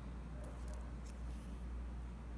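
Quiet handling of glass seed beads and a beading needle: a few faint small ticks over a steady low hum.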